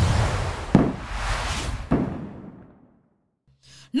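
Video transition sound effect: a noisy whoosh that swells, with two sharp hits about three-quarters of a second and two seconds in, then fades away.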